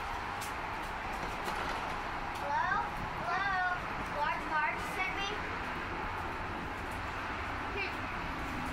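Steady hiss of rain and wind. A few short, high, rising-and-falling voice sounds come in about two seconds in and stop after about five.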